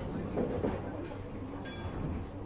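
Carriage noise inside a moving Singapore MRT Downtown Line train: a steady low hum and rumble. A short metallic clink rings out near the end.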